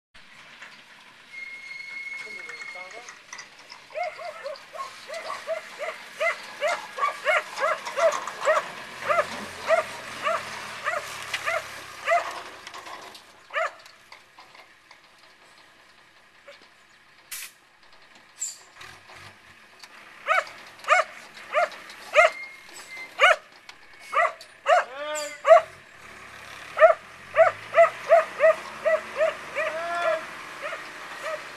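A small dog barking rapidly and repeatedly, about two or three barks a second, in two long runs with a quieter gap in the middle. Beneath the barking, a Unimog U1300L truck's diesel engine is faintly heard revving, twice.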